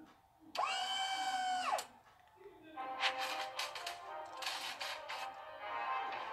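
A steady electronic tone with overtones sounds for about a second and then drops in pitch as it cuts off, like a spaceship's systems powering down for lack of charge. It is followed by a soundtrack of electronic music and clicking effects.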